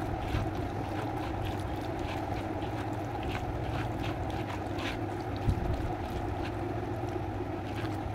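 A hand squishing and mashing soft roasted eggplant and tomato in a plastic bowl, giving faint, irregular wet crackles, with one thump about halfway through. A steady low hum runs underneath.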